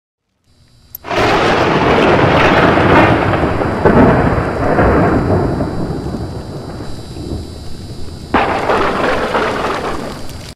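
Thunder sound effect: a sudden crack about a second in, then a long rumble that slowly fades, and a second crack and rumble near the end.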